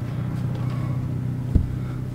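A steady low mechanical hum, with a single low thump about one and a half seconds in.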